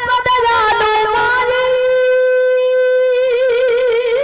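Ravanahatha, a Rajasthani bowed stick fiddle, playing a melody. About halfway through it holds one long, steady nasal note, then breaks into wavering ornaments near the end. Frame-drum strokes sound briefly at the start.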